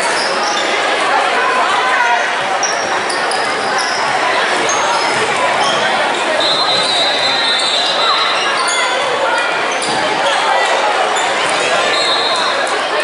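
Basketball game in a gym: a steady din of voices echoing in the hall, with a ball bouncing on the wooden court and short sneaker squeaks scattered throughout.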